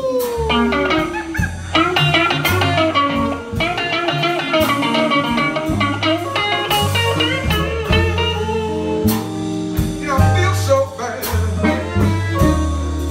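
Live blues band playing an instrumental passage: electric guitars, electric bass and drum kit, with a harmonica played into a cupped microphone.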